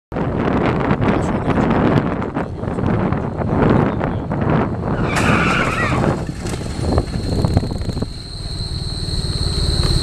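Wind and road noise on the microphone of a camera mounted on a moving vehicle, with its engine running. About five seconds in there is a brief high squeal. From about eight seconds the engine note settles into a steady pulse under a high steady whine.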